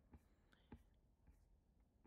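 Near silence: faint room tone with a couple of soft ticks.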